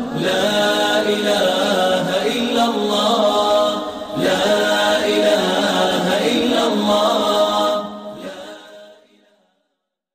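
Unaccompanied vocal chant with no instruments, breaking briefly about four seconds in. It fades out over the last two seconds.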